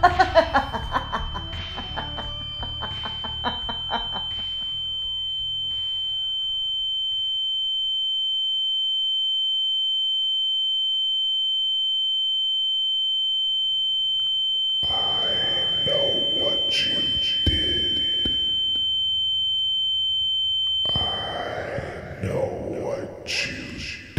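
A steady, high-pitched electronic sine tone, a sound-design ring, swells up and holds as music fades out over the first few seconds. Other mixed sounds join under it about fifteen seconds in, and the tone cuts off just before the end.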